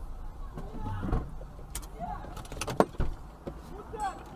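Car running with a steady low rumble, broken by several sharp knocks, the loudest about three-quarters of the way through, and brief bits of voice.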